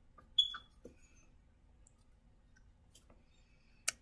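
A few faint, sharp clicks and taps in an otherwise quiet room. The loudest comes about half a second in and carries a brief, high ring.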